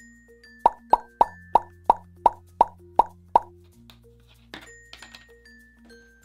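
A quick run of about nine evenly spaced plop sound effects, about three a second, one for each yellow Play-Doh seed dotted onto the clay tomato slice, over light background music; a few fainter pops follow.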